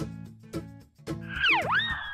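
Background music with low plucked notes and a steady beat. About halfway through, a cartoon whistle sound effect comes in: a whistling tone that dives steeply and swoops back up, then holds high while sagging slightly.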